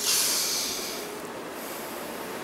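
A person snorting hard through the nose: one sudden hissing inhale that fades out over about a second.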